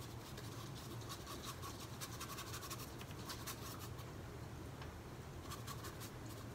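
Paintbrush bristles scratching and dabbing over a canvas with heavy-body acrylic paint, in a quiet run of short, quick strokes.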